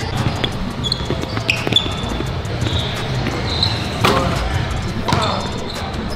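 Basketballs bouncing on a hardwood gym floor, a string of sharp thuds with one louder bounce about four seconds in, together with short, high sneaker squeaks on the court.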